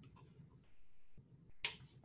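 Faint room tone, then a single sharp click near the end.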